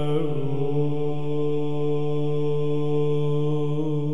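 Byzantine chant sung in English: a voice holds one long, steady note after a brief ornament at the start, with a slight waver near the end.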